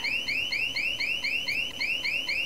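Home burglar alarm sounding: a steady run of high electronic chirps, about four or five a second.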